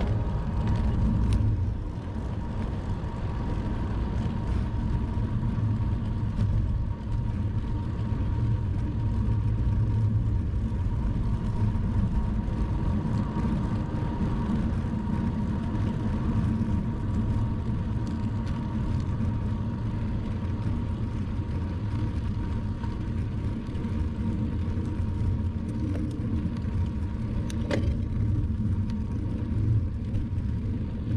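Wind rushing over the microphone and tyre rumble from a bicycle ride, a steady low rumble with a faint steady tone near 1 kHz underneath.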